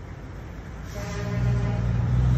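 Semi-trailer truck's diesel engine rumbling, growing louder as the truck pulls past; a steady higher tone joins about a second in.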